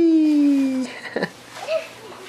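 Plush toy puppy giving an electronic whimper: one long whine that falls smoothly in pitch and stops about a second in.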